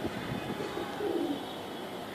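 Domestic pigeon cooing: two low coos, the first about half a second in and the second just after a second.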